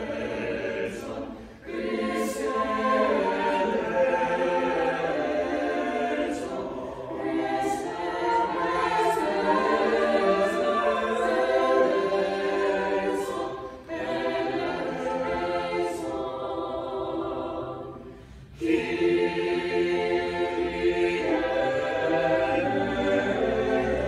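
Small mixed church choir of men's and women's voices singing in phrases. There are short breaths between phrases about a second and a half in and again around fourteen seconds, and a softer passage before the choir comes back in fully a few seconds before the end.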